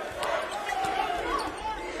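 Basketball game sound from the court: a ball bouncing on the hardwood under a steady arena crowd murmur.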